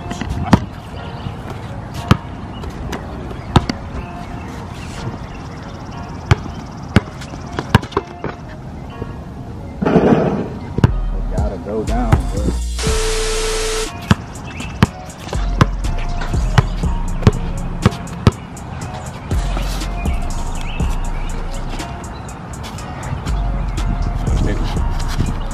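A basketball bouncing on an outdoor asphalt court: sharp slaps at uneven intervals, many times over. Background music with deep bass comes in about halfway through.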